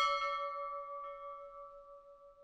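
A single bell-chime sound effect for a notification bell being tapped: one struck ding that rings on and fades away slowly.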